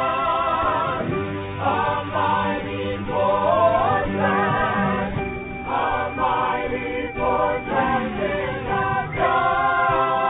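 A choir singing a Christian worship song in held chords, in phrases with short breaks between them.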